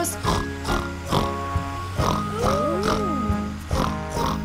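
A cartoon piglet's voice snorting like a pig, in the slot the song leaves for it, over a children's song backing track with a steady beat.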